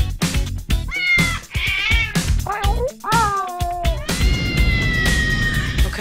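Cats meowing several times in a row, the calls wavering and falling in pitch, the last a long drawn-out meow, over background music with a steady beat.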